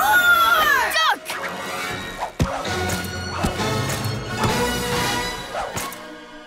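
Cartoon action sound effects over background music: arcing, falling effect tones in the first second, then a sharp crash about two and a half seconds in.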